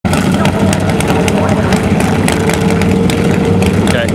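Harley-based V-twin drag bike engine running loudly at a steady speed as the bike rolls up toward the starting line, with scattered sharp cracks over the engine note.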